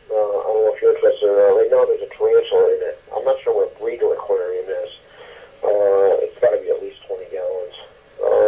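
A voice talking in short phrases with the thin, narrow sound of a recorded phone message; the words can't be made out.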